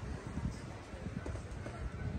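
Irregular low thumps and rumble, several a second, from footsteps and handling of a handheld camera carried on foot outdoors.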